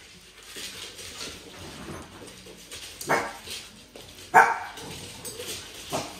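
A dog barking twice, two short sharp barks about a second and a half apart, among a group of dogs playing.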